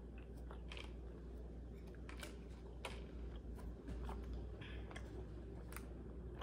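A person chewing gummy candy close to the microphone, with irregular small clicks and mouth noises over a steady low hum.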